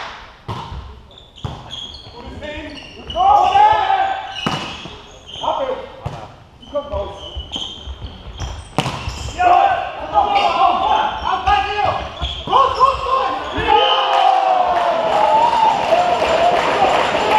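Volleyball rally in a sports hall: sharp smacks of hands hitting the ball and the ball striking the floor, with players shouting calls. The voices build into sustained shouting over the last few seconds as the point ends.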